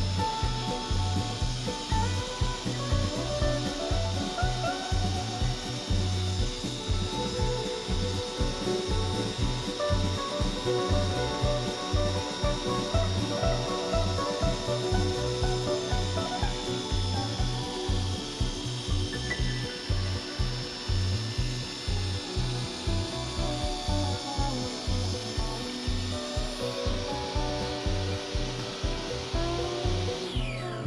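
Jobsite table saw running and ripping a pine board, the blade cutting steadily through the wood. Background music with a steady beat plays throughout.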